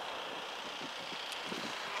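Steady outdoor background noise, a faint even hiss with no distinct event.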